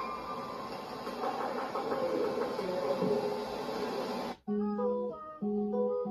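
A guitar being picked and strummed in a simple tune. About four seconds in it cuts off abruptly, and a different piece of music with clear held notes begins.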